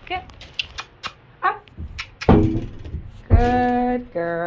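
A woman's voice calling to a horse, ending in one long, drawn-out call near the end, with a row of light clicks and knocks in the first second or so.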